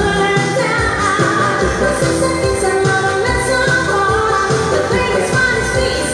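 Amplified live pop song: a woman sings lead into a microphone over backing music with a steady beat.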